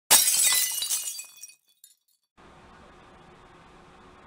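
Glass shattering: a sudden crash with bright, high ringing pieces that die away over about a second and a half. After a moment of silence, a faint steady room hiss begins.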